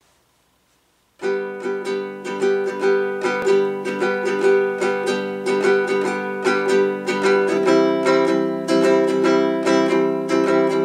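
Baritone ukulele strummed in a steady down-up rhythm, starting about a second in: a G chord, changing to C near the end.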